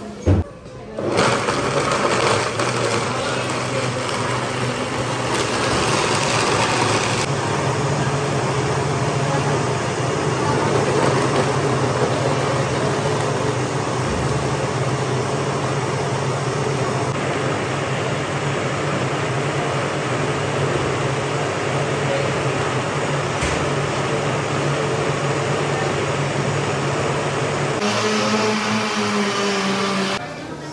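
Commercial countertop blenders running, blending fruit juice and smoothies: a steady motor whir with a low hum that starts about a second in after a short knock, and stops shortly before the end.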